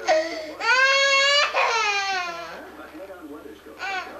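Toddler crying loudly in high-pitched wails: a sustained cry from the start that falls in pitch and trails off after about two and a half seconds, then a short cry again near the end.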